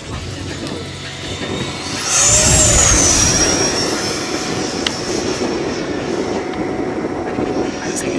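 Electric ducted fan of an E-flite Viper 90 mm RC jet, driven by an 8-cell FMS 1500 kV motor, at high throttle on a low, fast pass. A high whine and rush swell about two seconds in, drop in pitch as the jet goes by, and ease off to a steadier, quieter rush.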